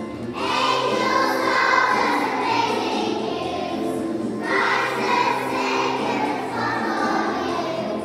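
A group of young children singing a song together over musical accompaniment, in two sung phrases, with a brief break about four and a half seconds in.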